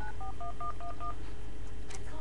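Phone keypad dialing tones (DTMF): a quick run of about five short two-note key beeps, one every fifth of a second or so, as a phone number is punched in. A faint click comes near the end.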